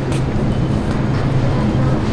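Steady low background hum of a large store.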